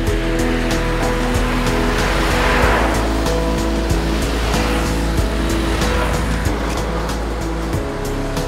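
Background music with long held notes over road-traffic noise from vehicles and motorbikes on a bridge. The traffic noise swells as a vehicle passes about two and a half seconds in.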